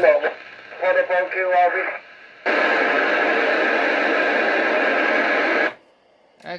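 Amateur FM transceiver receiving the ISS's ARISS repeater: a brief snatch of voice, then about three seconds of steady static hiss that cuts off suddenly near the end as the squelch closes.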